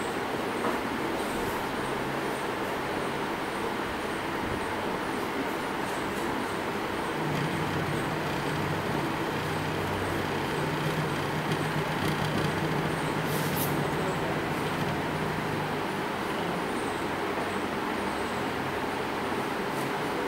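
Small DC motor of a speed-control trainer running with a steady whirring noise as its speed is turned up and down by hand. A low humming tone comes in about a third of the way through, when the motor is near its highest speed, and fades a few seconds before the end as the speed is brought back toward 1200 rpm.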